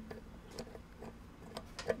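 Faint, scattered metallic ticks of a steel cover bolt being handled and started by hand into a motorcycle cam cover.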